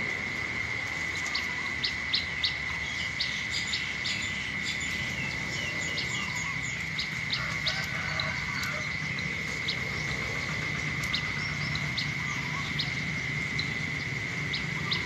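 Small birds chirping in short, scattered calls over a steady high-pitched drone that runs throughout.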